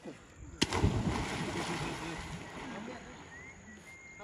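A person jumping into a deep river pool: a sudden splash about half a second in, then churning water that fades over the next couple of seconds.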